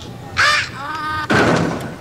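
Two short, harsh, raspy cries about a second apart.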